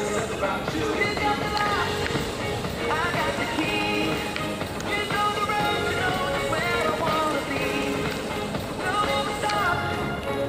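A pop song with a sung vocal line plays steadily throughout. Under it is the faint roll of inline skate wheels on concrete.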